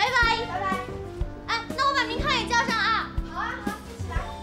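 Women's lively, high-pitched voices saying goodbye over light background music.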